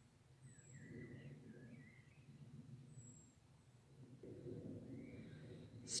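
Faint birdsong: a few short chirping phrases in the first two seconds and two thin, high whistles, over low rustling that grows slightly louder about four seconds in.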